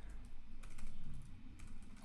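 Computer keyboard being typed on, a run of quick light key clicks.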